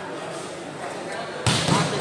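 One sharp thud of a volleyball impact, about one and a half seconds in, over low background chatter.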